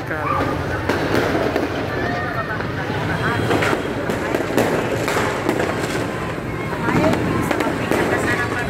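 Fireworks and firecrackers going off in a dense run of sharp, irregular cracks and pops.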